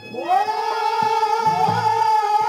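A male voice holds one long, high sung note that swoops up at the start and then stays steady, over a few dholak drum strokes.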